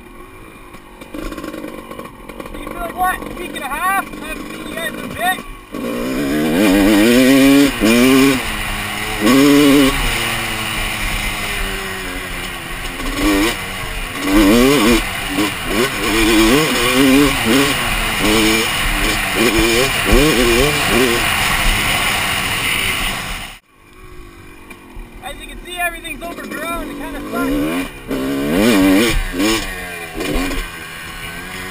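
Dirt bike engine revving up and down as it is ridden, the pitch repeatedly climbing and falling with the throttle. It is quieter for the first few seconds, gets much louder about six seconds in, drops away suddenly about three-quarters through, then picks up again.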